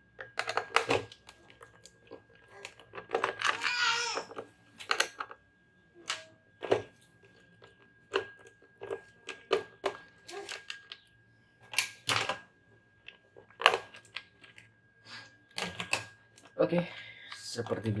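Plastic speedometer (instrument cluster) housing being taken apart by hand and with a screwdriver: irregular clicks and knocks of the screwdriver and plastic case as the screws come out and the cover is lifted off.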